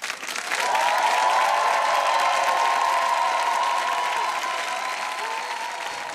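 Studio audience applauding at the end of a song, with a steady held note sounding through the clapping. The applause starts suddenly, is loudest in the first couple of seconds and slowly tails off.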